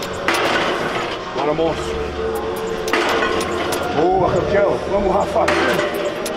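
Background music with a steady beat and a voice over it.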